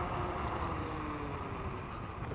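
Kukirin G3 Pro dual-motor electric scooter riding, off the throttle: a steady rush of road and wind noise with a faint motor whine that drifts gently lower as it slows.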